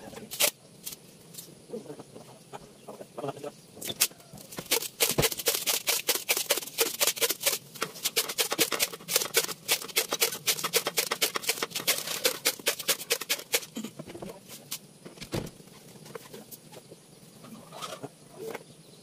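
Rapid, irregular clicking and tapping of tin cans and bamboo tubes being handled and knocked together, dense for about ten seconds in the middle and sparser near the start and end.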